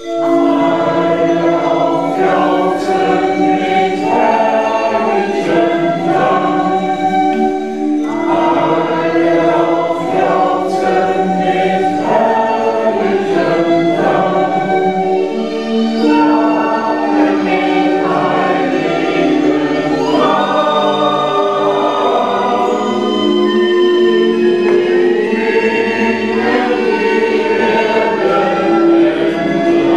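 Choir singing, many voices together holding long notes.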